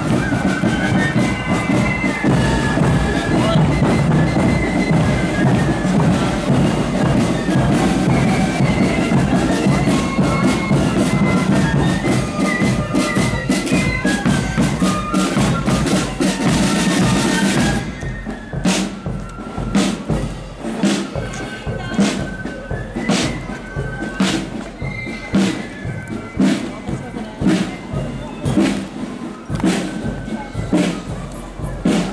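Marching flute band playing, with a flute melody over snare and bass drums. It is loud and dense until about 18 seconds in, when it suddenly drops to a quieter, thinner melody over clear, evenly spaced drum beats.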